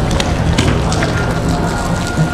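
Steady rain falling on wet pavement, with scattered close raindrop ticks.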